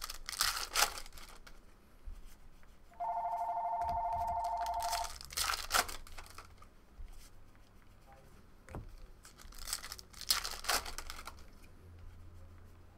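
Trading-card pack wrappers being torn open in three short bursts: near the start, midway and near the end. In between, a telephone rings for about two seconds.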